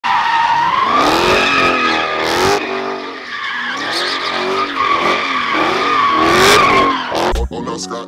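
Dodge Challenger doing donuts: the tires squeal steadily while the engine's revs rise and fall over and over, about once a second.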